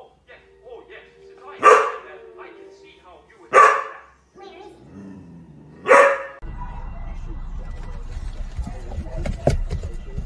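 A dog barking three loud, sharp barks about two seconds apart, over the quieter sound of a television. From about six and a half seconds in, a steady low rumble of a car cabin.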